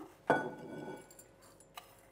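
A metal spoon clinks once against a glass dessert bowl as toasted rye breadcrumbs are spooned into it, leaving a short ringing tone that fades over about half a second. Fainter spoon and crumb sounds follow.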